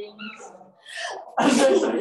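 Brief bits of a person's voice, then a sudden loud, hissy burst about one and a half seconds in, the loudest sound here.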